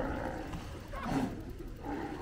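California sea lions barking, with one loud bark about a second in.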